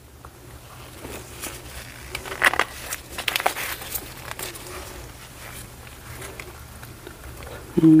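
Light clicks, taps and rustles of gloved hands handling small plastic craft items: a glitter jar being put away and a silicone spatula and mixing cup picked up, with a few sharper taps two to three and a half seconds in.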